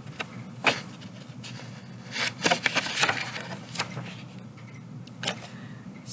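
Pages of a paper picture book being handled and turned: several short paper rustles and crackles, over a faint steady low hum.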